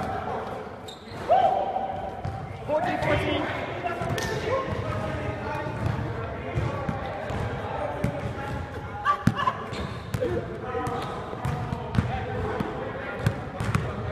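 A basketball bouncing on a court in irregular sharp bounces, amid players' voices calling out and chattering.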